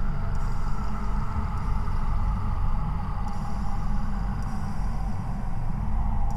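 Low, steady rumbling drone of a suspense film score, with a faint higher tone slowly sliding down in pitch above it.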